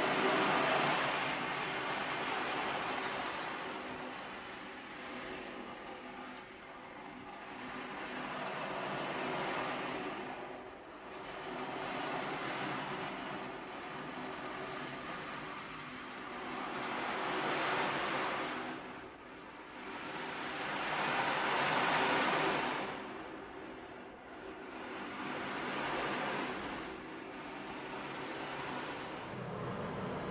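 Meinl 22-inch sea drum tilted slowly back and forth, the loose beads inside rolling across the head in a surf-like wash. The sound swells and fades, with a new swell every few seconds.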